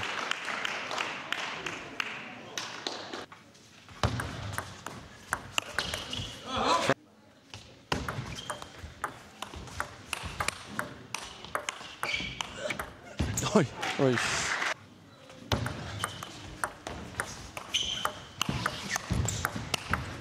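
Celluloid-type table tennis ball clicking back and forth between rubber-faced bats and the table in quick rallies, with brief pauses between points.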